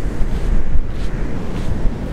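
Wind buffeting the microphone in a loud, gusty low rumble, over the steady wash of ocean surf.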